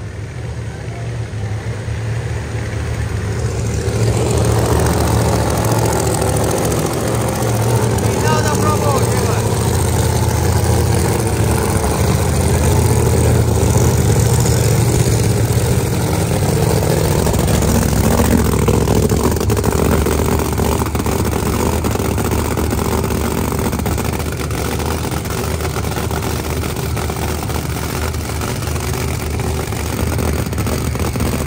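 Supercharged V8 of a Pro Mod Chevelle drag car idling loudly and steadily, growing louder over the first few seconds and then holding level.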